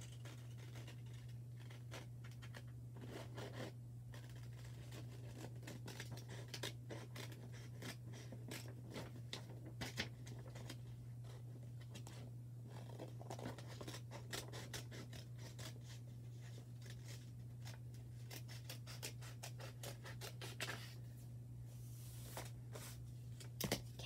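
Scissors cutting paper: a long, faint run of small snips and rustles of the sheet as a drawn shape is cut out.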